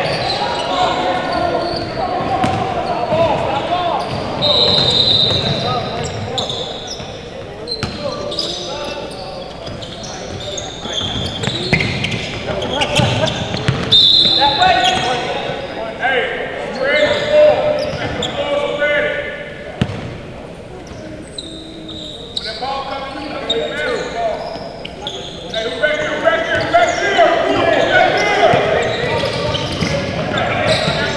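Basketball being bounced on a hardwood gym floor, with indistinct voices of players and onlookers calling out, echoing in a large hall.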